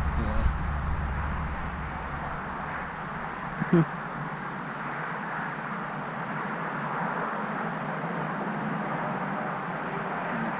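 Steady outdoor background noise with no clear single source. A low rumble fades away over the first two seconds or so, and a brief vocal sound comes just under four seconds in.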